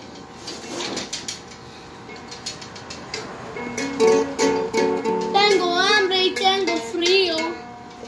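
Small ukulele strummed and plucked, with a high child's voice singing a short wavering melody over held notes in the second half.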